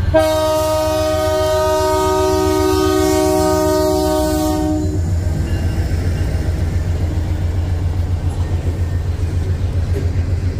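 Canadian Pacific diesel freight locomotive's air horn sounding one long multi-note chord that cuts off about five seconds in, over the rumble of the passing train. After it, the freight cars roll by with a rhythmic clatter of wheels on the rails.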